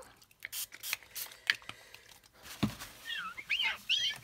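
A cloth wiping a glass craft mat clean: soft rubbing with scattered light clicks, a knock about two and a half seconds in, then a run of short high squeaks as it drags over the glass.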